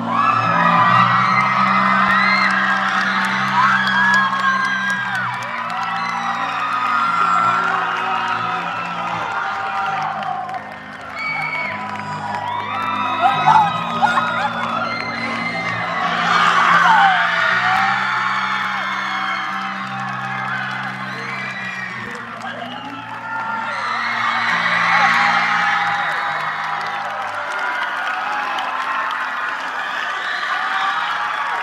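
Live band music with sustained low chords, under an audience whooping and cheering, with louder swells of cheers about halfway through and again a few seconds before the end.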